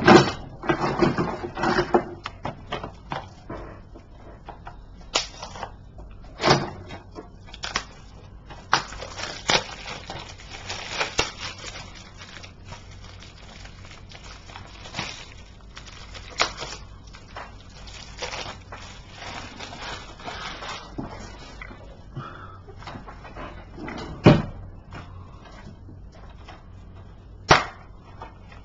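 Handling of a DVD case and its plastic packaging: crinkling plastic and scattered knocks and clicks of the case, with the sharpest knocks near the start and about 24 seconds in.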